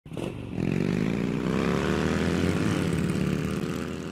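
Motorcycle engine accelerating, its pitch climbing steadily, with a brief rise and dip about two and a half seconds in, then fading away near the end.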